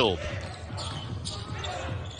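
Basketball being dribbled on a hardwood court.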